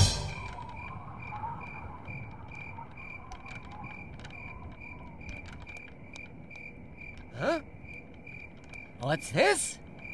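Crickets chirping: a faint, steady, evenly spaced high chirp. A short sound that sweeps up and down in pitch cuts in about seven and a half seconds in, and a cluster of similar louder sweeps comes near the end.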